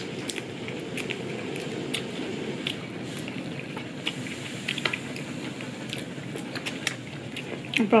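A person chewing tender boiled chicken, biting meat off the bone with small wet clicks and smacks of the mouth, over a steady low background noise.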